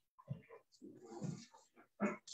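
Faint, scattered voices of a church congregation murmuring greetings to one another while sharing the peace.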